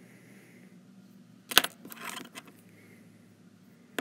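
A sharp light clink about one and a half seconds in, a few fainter clicks just after, and another short click near the end, over a faint steady hum.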